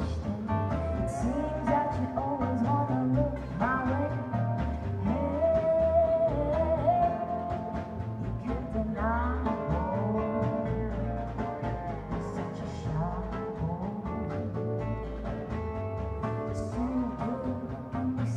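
A small acoustic band playing live: upright double bass, acoustic guitar, snare drum and lap steel guitar, with the steel's notes sliding up in pitch several times.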